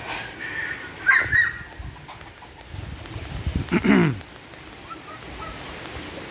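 Roosters calling: a few short calls in the first second and a half, then a louder call near four seconds in that falls in pitch.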